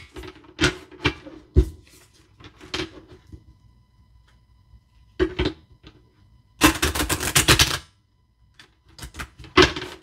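A deck of cards being shuffled by hand: a series of quick papery clicks and flutters as the cards slide and snap against each other, with a longer burst of rapid card flutter about seven seconds in.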